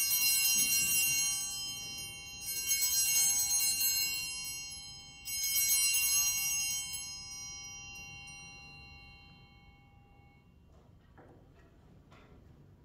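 Altar bells rung three times, about two and a half seconds apart, each ring slowly dying away; they mark the elevation of the host just after the words of consecration at Mass.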